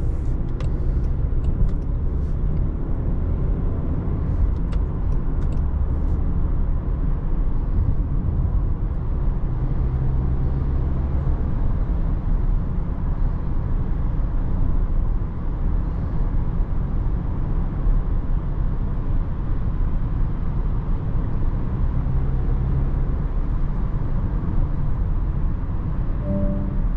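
Cabin noise of a Range Rover Evoque 2.0 Si4 petrol SUV cruising at highway speed: a steady low drone of tyres on the road and the engine.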